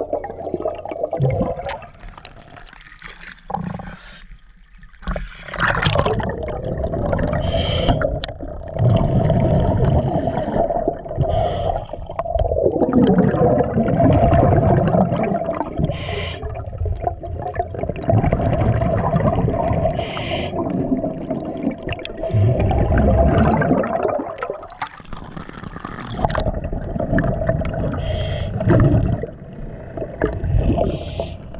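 Scuba diver's breathing heard underwater: long surging rushes of exhaled bubbles from the regulator, several seconds each, over a steady hum, with a few short sharp sounds in between.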